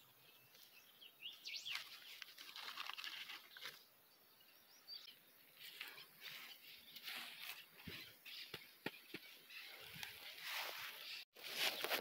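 Hands scraping loose compost soil over seed potatoes: faint rustling and crumbling in several short bursts, with a few small clicks.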